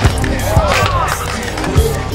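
A skateboard rolling on concrete with sharp board clacks and impacts, the loudest near the end, over music with a steady bass beat and vocals.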